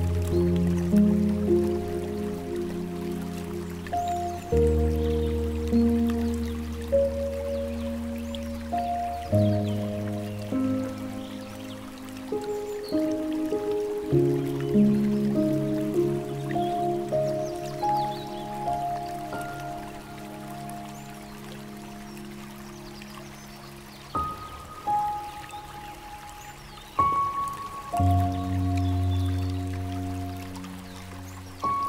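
Slow, gentle piano music, its chords changing every few seconds and thinning to a few high single notes in the latter half, over a faint sound of trickling water.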